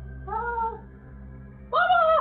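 Two short, drawn-out cries, each rising then falling in pitch: a fainter one about a quarter-second in, then a louder, higher one near the end, over a low steady background music drone.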